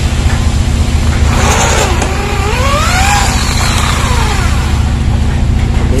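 Corded electric drill boring out a hole in a steel door-hinge plate to widen it. The motor runs with a steady low hum, and in the middle of the cut the bit squeals on the metal, rising and falling in pitch.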